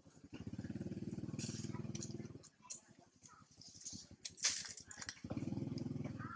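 A small engine running with a fast, even pulse for about two seconds, stopping, then starting again near the end. In between there are scattered clicks, one sharp loud click about four and a half seconds in.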